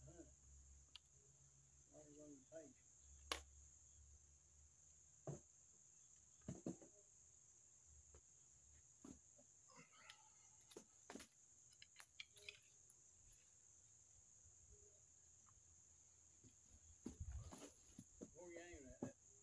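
Scattered faint clicks and knocks of a Killer Instinct Boss 405 crossbow being handled and set up, the sharpest about three seconds in, over a steady high-pitched insect drone.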